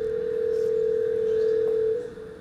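Telephone ringback tone: one steady ring of about two seconds, the signal a caller hears while the outgoing call is ringing at the other end and has not yet been answered.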